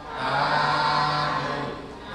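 Buddhist monks chanting paritta in unison on a steady low pitch: one phrase that begins just after a breath pause and fades near the end.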